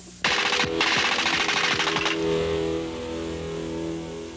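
A burst of rapid-fire shots starts suddenly and runs for about two seconds, with a brief break soon after it begins, then gives way to music with sustained low tones.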